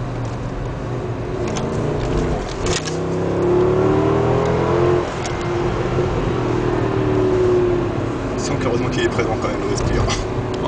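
Mercedes-Benz CLS 63 AMG's V8 heard from inside the cabin, pulling hard with its note rising. The note dips suddenly about five seconds in, climbs again, then eases off near the end.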